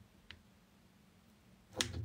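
A roll of sticky tape handled on a tabletop: a faint tick about a quarter second in, then a sharp click near the end, with a quiet room in between.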